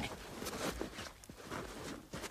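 Footsteps crunching in snow, a few short, uneven steps.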